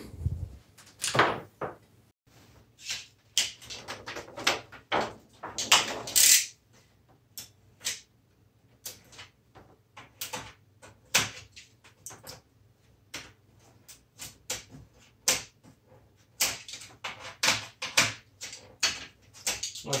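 Irregular clicks, knocks and rustles of hands handling an LCD TV's plastic reflector sheet and unclipping and unplugging an LED backlight strip, with a faint steady low hum underneath.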